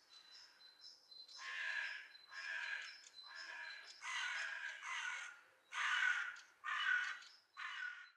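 A crow cawing over and over, about eight caws roughly a second apart, getting louder toward the end, with faint small-bird chirps underneath in the first second. The sound cuts off right after the last caw.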